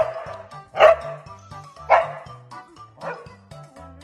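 Corgi barking for its dinner: four barks about a second apart, the last one weaker, over background music with a steady beat.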